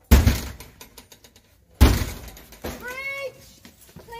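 Handheld police battering ram striking a house's front door twice, about two seconds apart, each a sharp bang with a short ringing tail, as the door is forced open. A high-pitched shout follows near the end.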